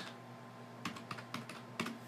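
Computer keyboard being typed on: a quick run of keystrokes starting about a second in.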